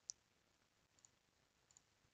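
Near silence with a few faint computer mouse clicks: one at the start, then a quick double click about a second in and another near the end.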